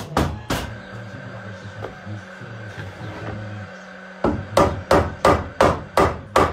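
Hammer striking nails into a timber stud frame: two knocks near the start, then a quick run of blows, about three a second, from about four seconds in.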